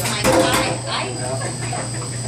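Indistinct voices of people talking in the room, over a steady low hum.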